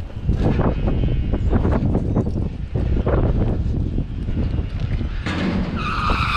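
Freight car running on the rails: a heavy low rumble with frequent metallic clanks and rattles from the car body. About five seconds in, a high-pitched metal squeal from the train sets in and holds steady.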